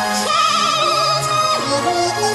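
Sped-up, chipmunk-pitched singing: a high voice holding notes with wide vibrato over a sustained accompaniment, with a short glide up to a new note a quarter-second in and a drop near the middle.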